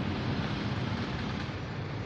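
Steady road traffic noise: engines of cars, trucks and motorcycles running in slow traffic, an even rumble and hiss with no single event standing out.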